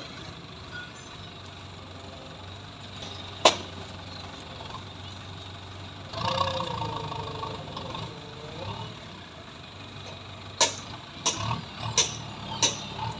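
JCB backhoe loader's diesel engine idling with a steady low hum. A sharp click comes about three and a half seconds in, and a few more clicks near the end.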